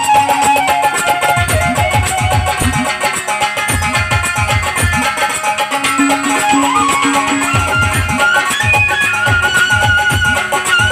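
Instrumental passage of live Bengali Baul folk music: a bamboo flute and a keyboard play the melody over a steady low drum beat.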